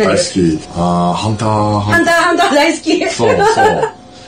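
People talking and chuckling in a small room, with a few drawn-out vowels held on one pitch in the first second or so.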